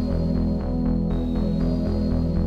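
Ambient electronic meditation music: held synthesizer tones over a rapidly pulsing low bass.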